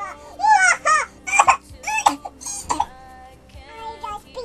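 A girl's high-pitched, wavering vocal sounds like mock crying or whining, in short bursts over background music, fading to just the music near the end.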